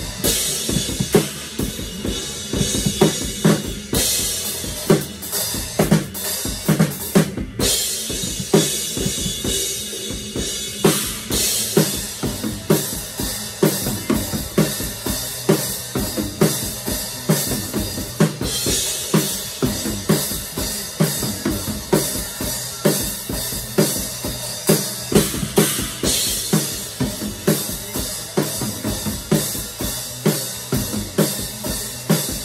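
Acoustic drum kit played in a driving groove: steady bass drum and snare hits with tom strokes, and stretches of crashing cymbal wash, the longest in the second half.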